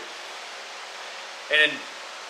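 Steady, even background hiss with no distinct events, then one short spoken word about a second and a half in.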